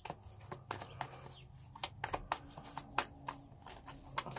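A deck of tarot cards shuffled by hand: a run of soft, irregular card clicks and flicks.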